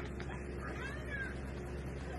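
A domestic cat gives one short meow about a second in, rising then falling in pitch, over a steady low hum of room noise.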